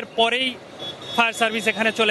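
Speech only: a man talking in Bengali, with a short pause in the middle.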